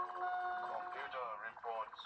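Electronic TV soundtrack: several steady held tones, giving way about a second in to wavering, warbling tones.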